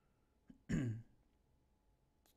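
A man clearing his throat once, briefly, a little under a second in.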